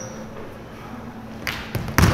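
Basketball bouncing on a gym floor, two short knocks about a second and a half in, over low hall noise.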